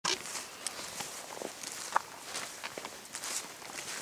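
Footsteps walking through grass: an uneven series of soft steps and rustles.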